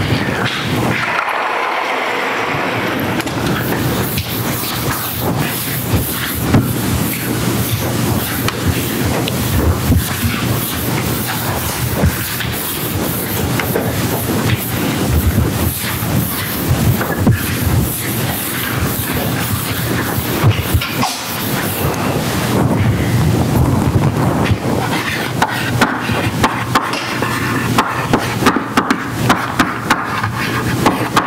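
A chalkboard being wiped with an eraser, a continuous scrubbing and rubbing with many short strokes. Near the end come sharper taps and scrapes of chalk writing on the board.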